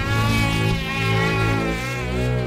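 Music with sustained bass notes that change pitch near the end, mixed with the buzzing whine of a high-revving snowmobile engine.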